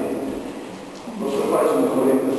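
A man's voice speaking, with a short pause in the middle before the voice starts again about a second and a quarter in.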